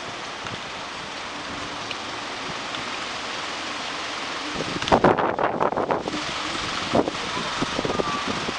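Street ambience: a steady hiss of city traffic. A cluster of thumps and rustles on the microphone comes about five seconds in, with one more knock near seven seconds.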